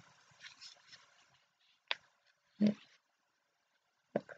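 Faint rustle of a paper coffee sachet being handled, then a single short click a little under two seconds in.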